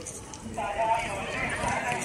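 A distant person's voice, a drawn-out call lasting over a second, heard over low street rumble.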